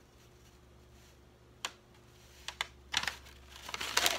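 A ceramic mug being handled and set down: a sharp click a little over a second and a half in and two light taps about a second later, then paper wrapping starting to rustle near the end.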